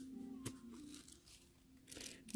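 A quiet room with a single soft click about half a second in, over faint low sustained notes of background music.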